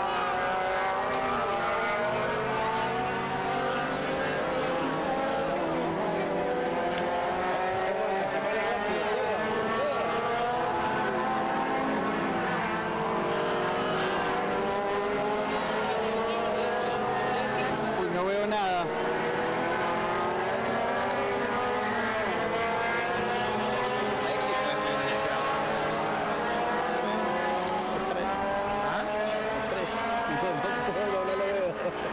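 A motor vehicle's engine running steadily, its pitch climbing slowly over and over, as when it accelerates.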